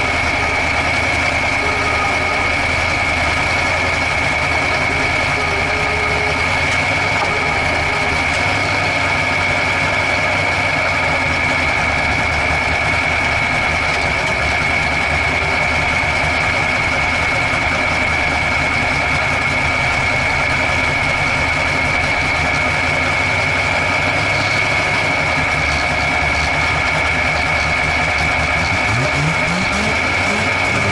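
Drag race car's engine idling, heard from inside its caged cabin, with a steady high whine over it. Just before the end the engine revs up.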